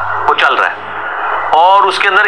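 A man's voice lecturing: a short spoken phrase near the start, a brief pause, then speech resuming about one and a half seconds in, over a steady background hiss and a low hum.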